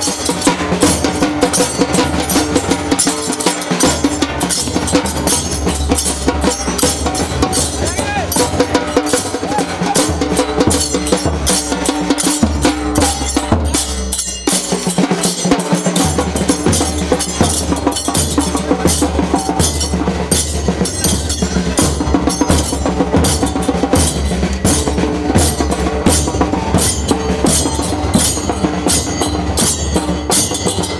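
Procession percussion: many pairs of large brass hand cymbals clashing in a fast, continuous rhythm over beating drums. The drums drop out for a moment about halfway through.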